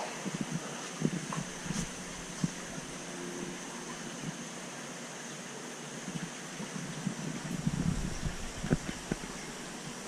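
Steady background hiss with a faint high steady tone, broken by a few soft knocks early on and some low rumbling and knocks about three-quarters of the way through.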